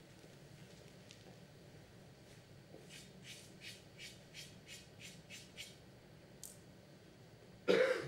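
A run of about nine quick, soft scraping strokes, about three a second, then a single loud cough near the end.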